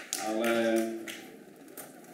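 A man's voice over a microphone holding a short, steady hesitation sound for under a second, followed by a faint click.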